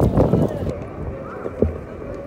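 Footsteps on stone paving among passers-by talking, with one sharp thump about one and a half seconds in.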